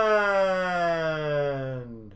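A long siren-like wail sliding slowly and steadily down in pitch, fading out near the end.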